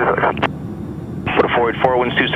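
Air traffic control radio speech, thin and cut off above the high voice range as over an aircraft radio, with a short break about half a second in. Underneath runs the steady low drone of the Cessna 172's piston engine.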